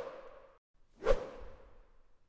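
Logo-animation sound effect: two whooshes about a second apart, the first fading out at the start and the second about a second in, each trailing off with a short ring.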